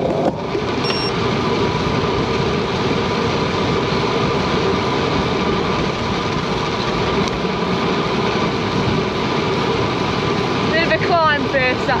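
Steady rush of wind and tyre noise on a road bike rolling along a tarmac road, picked up by a bike-mounted camera, with a faint steady hum under it. A voice starts talking near the end.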